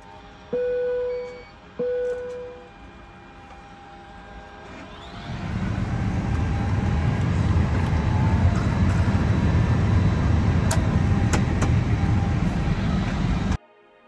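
An Airbus A320-family airliner being powered up: two short beeps about a second apart, then a steady low rushing rumble from its systems builds up from about five seconds in and holds, cutting off abruptly near the end.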